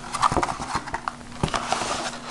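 Paper leaflets and a cardboard box being handled: rustling with several light knocks and taps as papers are pulled out of the box.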